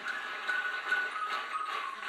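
Live band music heard off a television, thin with no bass, with hand claps on the beat about twice a second.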